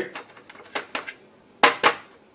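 Paper tray of an HP OfficeJet Pro 8610 inkjet printer being loaded with paper: a few light plastic clicks and handling noises, then two sharp knocks in quick succession near the end.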